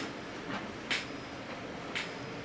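Pages of a book being handled and turned: short papery rustles about a second apart over a steady room hum.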